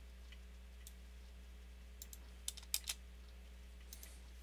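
A handful of faint computer keyboard and mouse clicks, most of them two to three seconds in, over a low steady hum.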